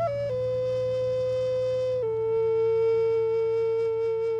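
Native American flute playing a slow melody: a quick ornamented step down into a long held note, then a slightly lower long note that begins to waver near the end, over a low steady hum.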